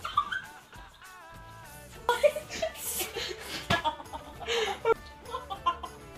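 Young people laughing in bursts over background music.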